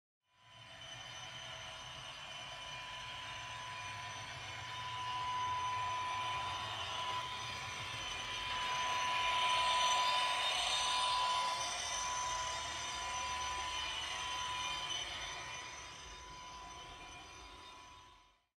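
Model train of red double-deck coaches running past on a layout: a steady rumble with a constant high whine, fading in at the start, loudest about ten seconds in as it passes closest, then fading away.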